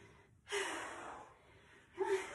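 A person gasping hard from exertion. One long, breathy exhale with a slight voiced edge starts about half a second in and fades over a second, and another begins right at the end.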